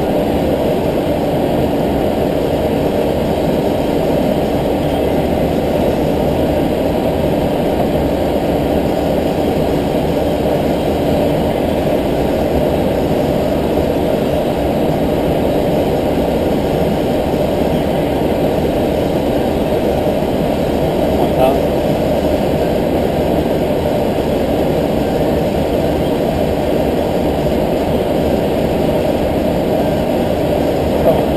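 Steady cockpit noise of an Airbus A320-family airliner in flight on approach: an unbroken, dull rush of airflow and engines, with a brief faint click about two-thirds of the way through.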